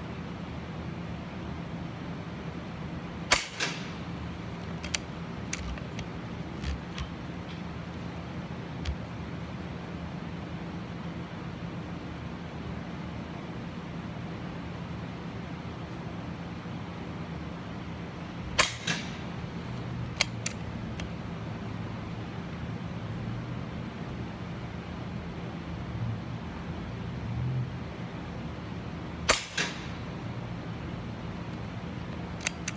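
Daystate Air Wolf .22 PCP air rifle firing three single shots, more than ten seconds apart. Each sharp report is followed within a fraction of a second by a softer second knock, and a few light clicks come after the first two shots, over a steady low hum.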